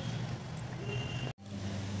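A low, steady hum under faint hiss, broken by a sudden split-second dropout about two-thirds of the way through.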